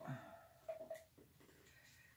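Faint, wordless vocal sounds from a woman: a short murmur falling in pitch at the start, then soft breathy sounds.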